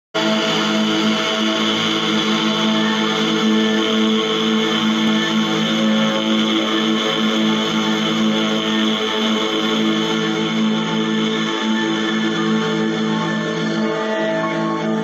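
Background instrumental music of long, steady held tones.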